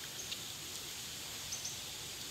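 Steady outdoor background hiss with a few faint, short, high chirps: one about a quarter second in and a quick pair about one and a half seconds in.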